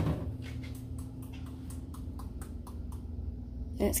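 Plastic cinnamon shaker being shaken over a cupcake: a quick run of light ticks, about six a second, over a steady low hum.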